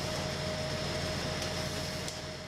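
Steady mechanical hum of bakery equipment running, an even drone with a constant high whine on top and a faint click about one and a half seconds in.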